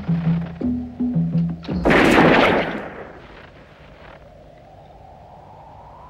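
Film score of short, pulsing low notes with knocking percussion, cut off about two seconds in by a single loud revolver shot that rings out and dies away within a second. A low, steady hum follows.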